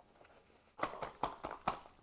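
A clear food storage bag being sealed and handled: quiet at first, then about a second in, a quick run of clicks and crinkles as the seal strip is pressed shut.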